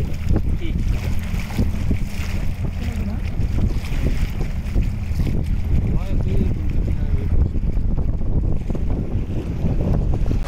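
Boat motor running steadily under way, with wind buffeting the microphone.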